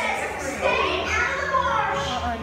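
Several people's voices talking and calling out over a low, steady hum.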